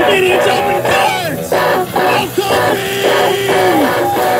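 Live band playing: electric guitars over a drum kit, with a long held note that slides down just before the end.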